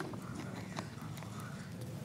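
A sharp knock, then faint scattered clicks and knocks of objects being handled, over a steady low hum.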